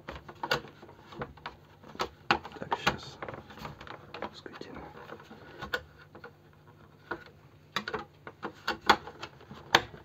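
Irregular sharp plastic clicks and taps as a perforated plastic mesh cover is pressed and snapped into place on a plastic terrarium lid, the loudest clicks coming near the end.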